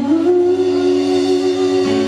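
Live pop band holding a long sustained closing chord on keyboard and guitars, the pitch steady throughout.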